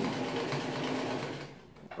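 Domestic electric sewing machine running steadily while stitching a thin fabric, stopping about one and a half seconds in; the presser-foot pressure is set too light for the thin fabric.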